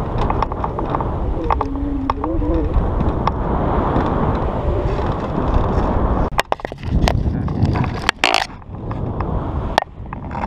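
Wind rushing over the camera microphone in paraglider flight, with a short stretch of voice early on. From about six seconds in, the wind noise breaks up into a run of sharp clicks and knocks as the camera is handled and repositioned.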